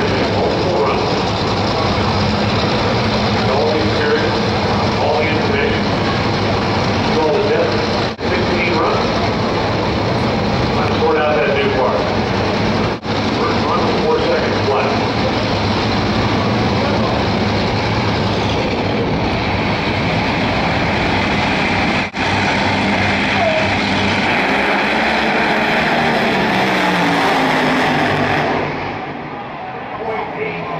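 Top Fuel dragster's supercharged nitromethane V8 running, a loud continuous noise broken by three short gaps at edits, with a voice heard beneath it in places; it drops away sharply near the end.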